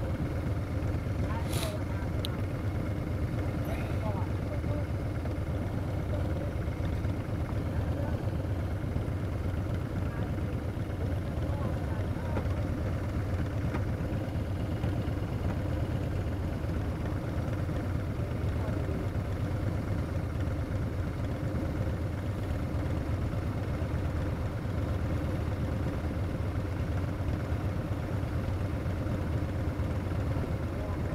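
Motorcycles idling at a standstill, the BMW R1200RT's boxer twin among them: a steady low hum throughout, with one brief sharp click about a second and a half in.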